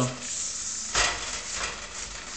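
Kitchen paper towel wiping across a stainless steel oven door, a dry scuffing rub that starts suddenly about a second in and then fades.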